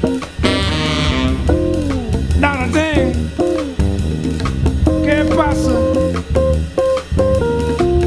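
Jazz band recording with a guitar lead playing quick lines and bent notes over drum kit and bass.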